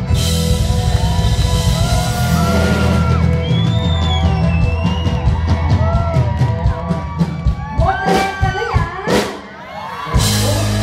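Live concert band playing with a steady drum and bass backing, while high gliding whoops and shouts rise over it. The band's low end drops out about seven and a half seconds in. Louder shouting follows, then a brief lull just before the music comes back in.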